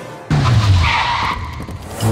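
Tyres skidding as a police SUV brakes hard to a stop, coming in suddenly about a third of a second in, with background music.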